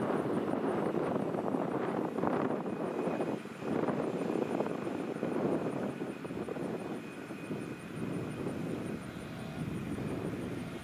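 A railroad crossing signal bell ringing in rapid, even strokes, faint under a loud, steady engine drone.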